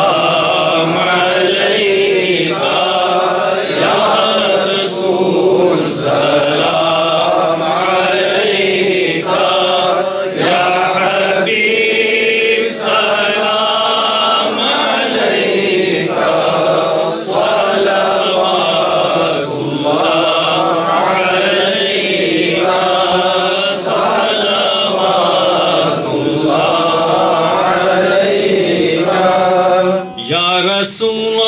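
Men's voices chanting an Islamic devotional recitation together, in long, gliding melodic lines with hardly a break.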